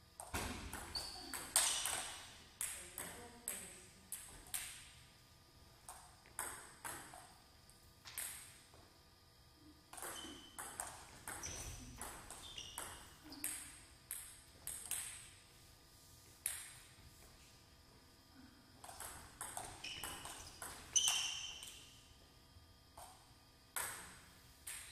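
Table tennis ball clicking sharply off the paddles and the table in a series of rallies, the hits coming at an irregular rate of about one or two a second, with a quieter gap between points about two-thirds of the way through.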